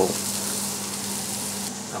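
Leeks, garlic and chopped apple sizzling in butter in a frying pan, a steady hiss that cuts off suddenly near the end.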